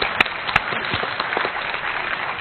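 Audience applauding: dense, steady clapping from a large seated crowd, with a few sharp, louder claps in the first second.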